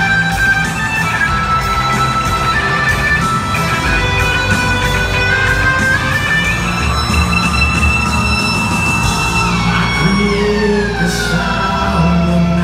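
Live rock band playing in an arena, led by electric guitar holding long notes over bass and drums. Near the end a long pitch slide sweeps steadily downward.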